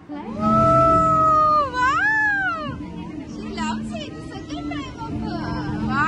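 A child's high voice holds one long cry, then gives a squeal that rises and falls about two seconds in, followed by short excited vocal sounds. A steady low hum runs underneath.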